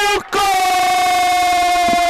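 A man's long drawn-out goal shout, held on one high pitch for about two seconds after a brief break near the start, then falling away at the end.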